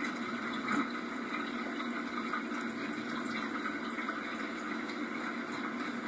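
Steady hiss and background noise of an old camcorder videotape soundtrack, with no distinct sound event.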